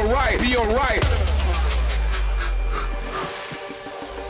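Hardcore/frenchcore electronic music: a bending, wobbling pitched lead over heavy distorted bass for about a second, then a long low bass note that fades out, leaving the track quieter near the end.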